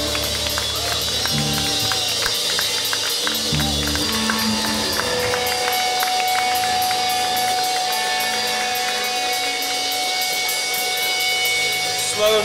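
Live rock band playing electric guitars, bass and drums with a steady wash of cymbals. About halfway through the low bass notes stop and a single high note is held to the end.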